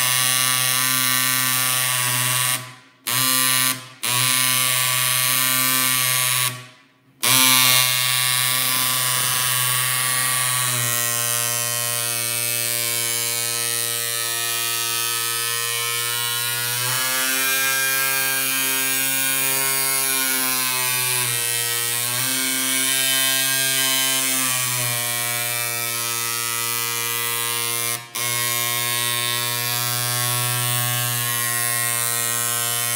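PEQD-200E dot peen marking machine engraving a metal plate, its stylus pin hammering so fast that it makes a continuous buzz. The pitch of the buzz shifts several times as the head moves, and it breaks off briefly around three, four and seven seconds in and once near the end.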